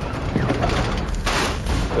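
Gunfire in rapid volleys, with one loud blast a little past halfway through.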